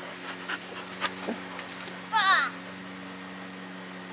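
A dog gives one short, high, wavering whine that falls in pitch about halfway through, over a steady low hum.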